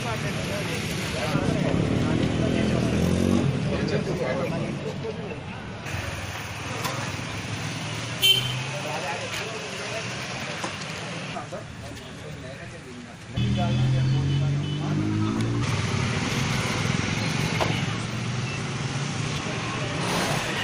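Motor vehicle engines running and passing on a street, with people talking in the background. An engine comes in again suddenly about 13 seconds in, and there is one sharp click a little after 8 seconds.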